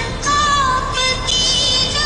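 Music with a high melody line of held notes that slide between pitches.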